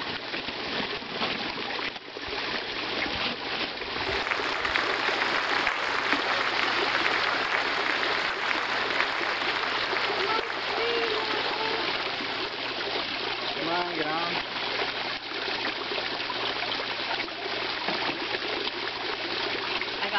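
Steady running, splashing water at a koi pond, with a plastic fish bag rustling and water pouring out of it as the bag is tipped over the water to release new koi near the middle.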